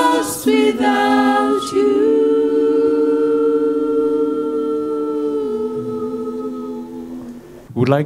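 Female worship singers holding a long sung note in harmony with little or no accompaniment, several voices together, the sound fading away near the end.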